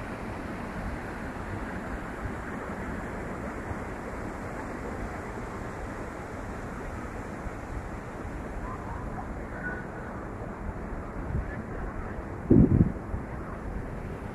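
River water rushing over a small weir, a steady even noise. Near the end there is a brief loud low rumble of wind on the microphone.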